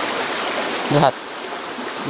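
Stream water running steadily over stones, a continuous rushing that drops suddenly to a lower level about halfway through.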